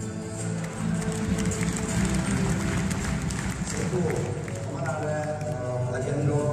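Background music with a man's voice over it, played through an arena's loudspeakers.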